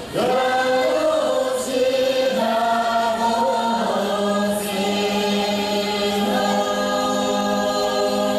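Music of many voices singing together in long, held notes over a steady low drone, with two brief high shimmers about two and four and a half seconds in.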